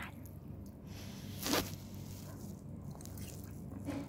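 A person eating instant noodles, with one loud slurp about one and a half seconds in and a softer one near the end.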